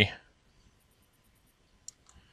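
Near silence with a single short computer mouse click near the end, after the tail of a spoken word at the very start.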